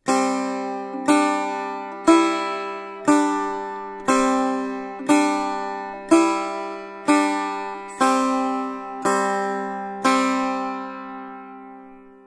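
Setar, the Persian long-necked lute, plucked in slow, even single strokes, about one note a second, playing a simple beginner exercise. The melody moves up and down by step over a steady lower note that keeps ringing, and the last note is left to ring out and fade.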